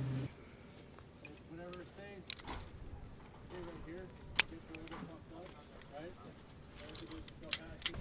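Low, indistinct voices talking in the background, with a few sharp clicks. The loudest click comes about halfway through, and two more come near the end.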